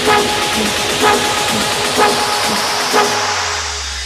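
Progressive house track in a build-up: a noise sweep rising in pitch under short, horn-like synth stabs about twice a second. Near the end the stabs thin out and a low bass tone comes in ahead of the drop.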